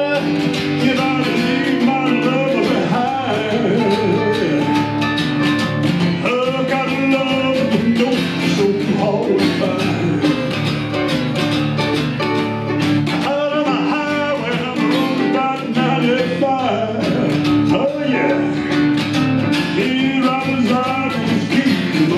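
Two acoustic guitars playing an instrumental break in a song, one strumming rhythm while the other plays lead lines.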